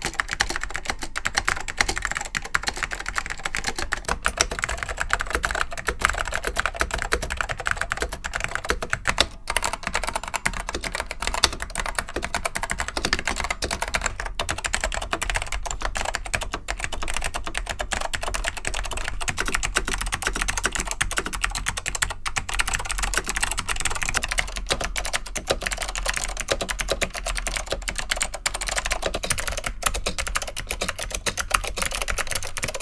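Rapid, continuous typing on vintage keyboards with Alps SKCM switches, moving from board to board: an Apple M0116 with orange SKCM switches, then a Dell AT102 with black SKCM switches, then an Acer KB-101A with blue SKCM switches.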